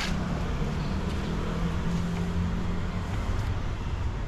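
A motor vehicle's engine running nearby, heard as a steady low hum that dips slightly in pitch and fades out after about three seconds, over a low street rumble.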